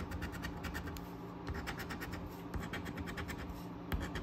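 A coin scratching the latex coating off a scratch-off lottery ticket, in short quick strokes that come in several runs with brief pauses between them.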